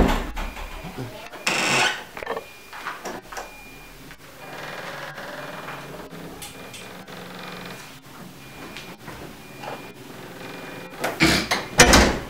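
A wooden interior door with a metal lever handle being opened, and then pushed shut with sharp clicks and knocks of the handle and latch about eleven seconds in.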